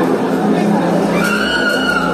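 A large crowd's loud, continuous clamour of many voices calling out at once, with a held higher tone coming in during the second half.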